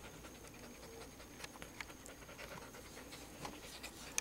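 Husky puppy panting faintly close to the microphone, with a few small clicks.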